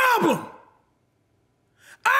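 A man's drawn-out, wordless vocal exclamation with a pitch that glides up and down. It trails off like a sigh about half a second in, leaving about a second of near silence.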